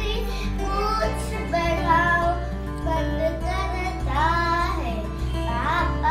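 A young girl reciting a Hindi children's poem aloud over background music.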